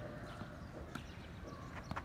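Tennis ball knocks during a half-court rally on an artificial-grass court: light racket hits and bounces, a sharper knock about a second in, then two quick knocks near the end as the ball bounces and is struck on a forehand.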